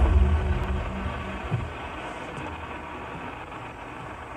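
A deep, low rumble from the film's sound effects fading away over about two seconds, leaving a quieter steady low rumble.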